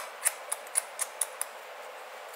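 Hair-cutting shears snipping through a section of hair at the nape: about seven quick, crisp snips in a steady rhythm that stop after a second and a half.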